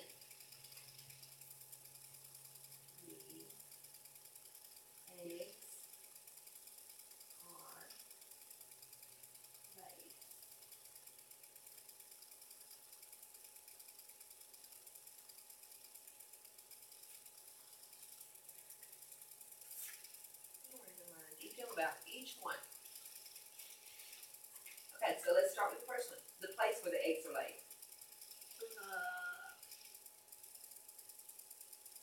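Quiet room tone with a steady faint hum and a few soft, brief sounds, then low voices talking quietly in the last third.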